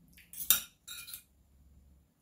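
Metal spoon and fork scraping and clinking against a plate, with one sharp clink about half a second in and a second short scrape just after a second in.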